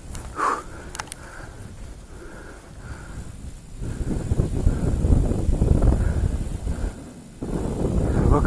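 Wind rumbling on an outdoor camera microphone with rustling handling noise. It is light at first, with one sharp click about a second in, then grows heavy from about four seconds in and drops away shortly before the end.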